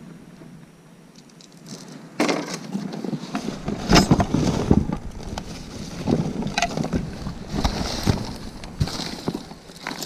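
Gloved hands rummaging through a cardboard box of mixed items: irregular rustling, knocks and clatter as things are shifted and lifted, starting about two seconds in after a quiet opening.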